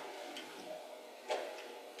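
Quiet pause in speech: faint room tone, with a short sharp click at the very start and a brief faint sound about a second and a half in.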